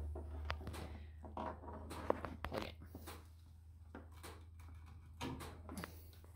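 Scattered light clicks and knocks of hands handling battery-charger clamps, leads and the plug, over a steady low hum.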